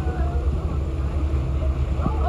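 Low, steady rumble of a small boat's engine idling on the water, with faint passenger voices.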